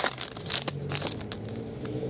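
Foil trading-card pack wrapper crinkling and tearing as it is pulled open by hand, sharpest in the first half second, then a few lighter crackles as the cards are slid out.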